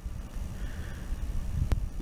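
12-volt LED computer case fan running, switched on by a thermostat: a steady low rush of air with rumble from the airflow on the microphone, not sounding powerful. A single click about one and a half seconds in.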